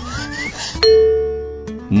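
Cartoon sound effects over light background music: a short rising whistle-like glide, then a single bell chime just before one second in that rings and fades away.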